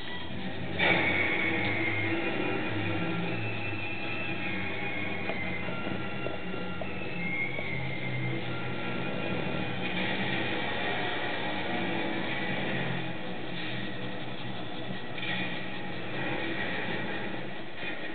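Music with sustained notes playing from a television in the room.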